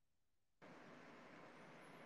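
Near silence, then about half a second in a faint, even hiss comes on and holds: the background noise of a speaker's microphone being unmuted on a live voice call.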